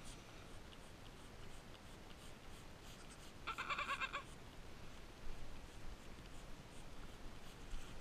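A goat kid bleats once, a short call about three and a half seconds in, over faint rubbing and rustling of hands working the kid's coat.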